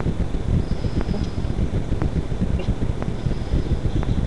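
Steady low rumbling microphone noise with faint clicks about once a second, and no voice getting through: the call connection is breaking up.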